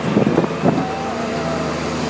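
Case 721F wheel loader's diesel engine running steadily close by. A few knocks come in the first moment, and a thin, slightly falling whine follows.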